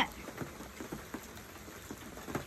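Rain falling outdoors, a steady soft hiss with scattered sharp drop ticks at irregular times.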